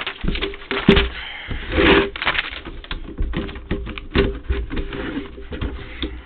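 A paper slicer and sheets of paper being handled on a desk: paper rustling and sliding with a swell about two seconds in, and a quick, irregular run of small clicks and knocks from the trimmer.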